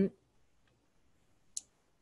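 A pause in speech: the tail of a spoken "um", then near silence broken by one short, sharp click about one and a half seconds in.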